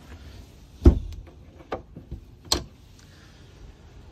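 Fiberglass deck hatch lid of a boat's forward fish box shutting with one loud thud about a second in, followed by a few lighter knocks and a sharp click a second and a half later.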